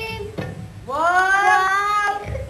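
A child's voice holding one long drawn-out note that rises as it begins, about a second in, after a short note at the very start.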